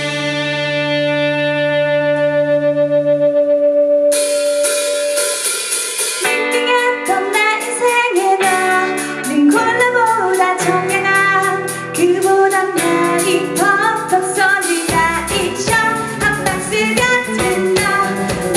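Live rock band with a female lead singer, electric guitars, bass and drums. It opens on a long held chord with a sustained note, then the drums come back in about four seconds in and the singing carries on over the full band.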